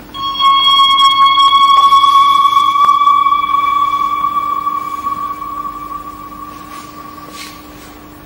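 A single bell-like tone struck once, ringing with a clear pitch and several overtones and slowly dying away over about six seconds. A faint steady hum lies underneath.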